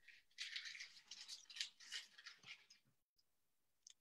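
Ferrero Rocher chocolates being unwrapped: quiet, irregular crinkling and rustling of their foil wrappers, which stops about three seconds in.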